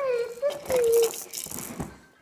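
A child's voice holding one long wavering note, over a plastic rattling from a baby's activity table that fades by about a second and a half in.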